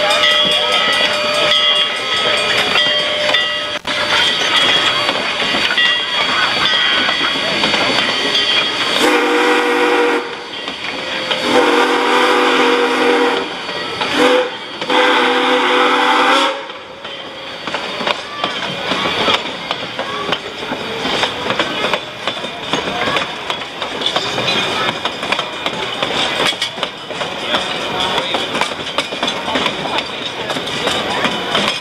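Steam whistle of Denver & Rio Grande Western K-27 No. 464, a Baldwin 2-8-2 narrow-gauge steam locomotive, blowing the grade-crossing signal starting about nine seconds in: long, long, short, long, in a tone of several notes at once. Around it, passenger coaches roll past with a steady rattle and clatter of wheels on the rails.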